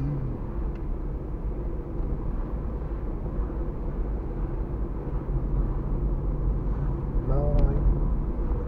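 Steady low rumble of a car's engine and tyres heard from inside the cabin while driving, with a brief voice near the end.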